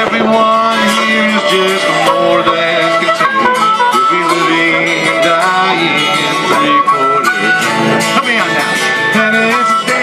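Live acoustic guitar strumming under an amplified harmonica solo, with held and bending reedy notes: an instrumental break between sung verses.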